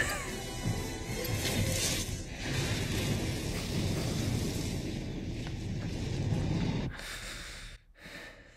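Movie soundtrack of a huge explosion: film music over a long, low rumble, with a crackling flare about two seconds in. It falls away abruptly about seven seconds in.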